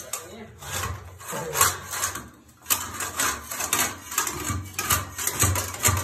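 Long-handled floor scraper pushed in repeated strokes, its blade scraping and chipping old vinyl composition tiles up off the floor, about two strokes a second.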